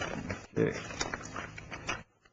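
Sheets of graph paper rustling and crackling as they are handled and pulled apart, with scattered sharp crinkles.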